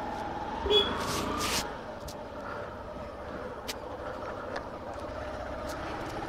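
Hero Honda Super Splendor motorcycle's single-cylinder four-stroke engine running steadily while riding along a dirt lane, heard up close from the pillion seat. A brief rush of noise about a second in and a few sharp clicks from the ride.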